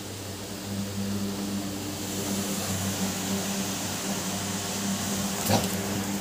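A steady low mechanical hum with hiss, and a single sharp click about five and a half seconds in.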